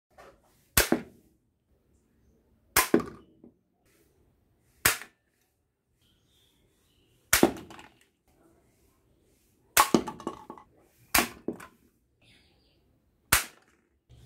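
A toy gun fired seven times, one sharp shot every two seconds or so, each ending quickly.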